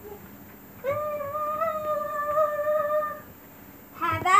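A child's voice holding one long, steady note, starting about a second in and lasting about two and a half seconds.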